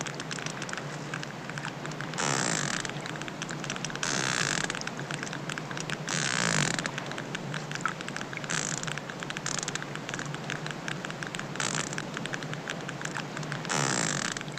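Hydrophone recording of a baby sperm whale: constant fine clicking, its sonar, broken every two seconds or so by louder rasping bursts, the growl that may be its cry.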